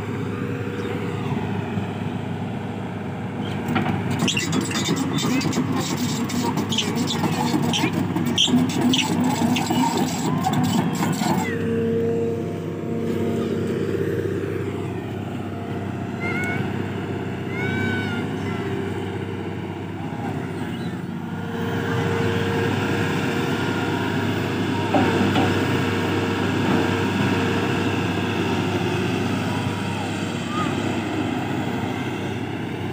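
Tata Hitachi crawler excavator's diesel engine running steadily, with a run of metallic clanking and clicking for several seconds in the first half as the machine works.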